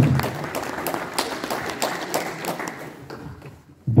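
Small audience clapping, a dense patter of hand claps that thins out and fades away over about three seconds.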